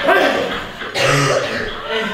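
Wordless throaty vocal sounds from a man, with a rougher, noisier burst about a second in.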